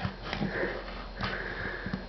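A person breathing out through the nose close to the microphone, two breathy sniffs, the second longer, about half a second in and from just past a second. There are a couple of faint clicks as the hard plastic toy is handled.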